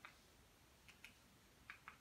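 Faint clicks of Amazon Fire TV remote buttons being pressed as a PIN is keyed in: about four presses, two of them close together near the end, over near silence.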